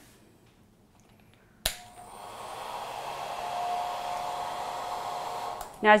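Conair 1875 hand-held hair dryer switched on with a click just under two seconds in, its fan spinning up over about a second and then blowing steadily with a faint whine.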